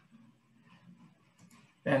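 Faint room sounds during a pause in speech, then a man's voice starts speaking near the end.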